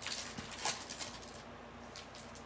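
Crinkling of a foil baseball-card pack wrapper as it is pulled open around the cards, a few short crackles in the first second and a half, the loudest a little before the middle.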